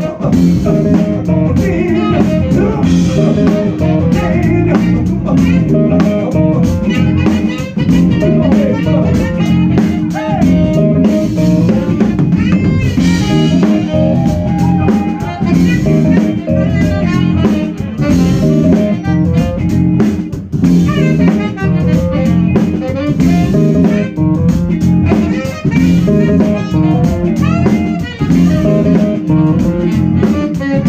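Live funk band playing an instrumental passage: drum kit, electric guitar and keyboards together in a steady groove.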